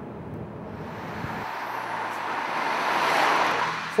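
Opel Meriva on the move: a low drone for the first second and a half, then a rushing tyre-and-wind noise that swells and peaks near the end.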